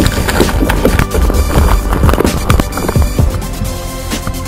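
Background electronic music over a hooked fish thrashing at the surface beside a kayak, throwing up water in a quick, irregular run of splashes and knocks.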